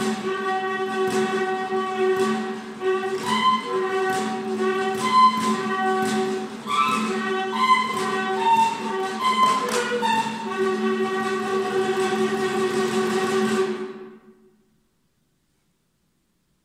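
A saxophone neck fitted with a long plastic tube, played while the tube is swung, together with a prepared guitar: a steady low drone under higher overtones that step up and down, with a faint regular pulse. It cuts off abruptly near the end.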